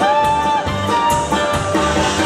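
Live country band playing: acoustic guitar, electric bass, banjo and drums over a steady beat, with a long bent lead note in the first half-second.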